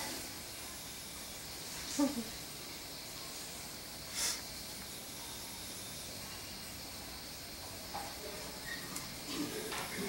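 Quiet, steady background hiss with no clear source of its own. A brief voice sound comes about two seconds in, a short sharp hiss about four seconds in, and faint voices near the end.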